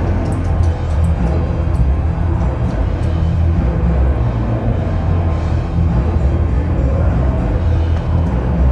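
Emerson Designer ceiling fan with its K55 motor giving a loud, steady low hum and rumble while the spinning blades slow down, braked by the owner's stopping trick.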